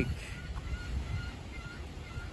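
Birds calling faintly in short, high notes repeated two or three times a second, over a low wind rumble.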